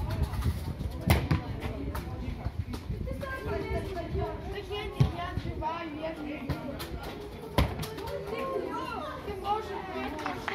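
Boys' voices calling and shouting across a football pitch during play, with several sharp thuds of the ball being kicked, the loudest about a second in and about five seconds in.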